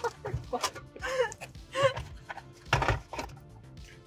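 A woman laughing in repeated bursts, the loudest about three seconds in, over background music.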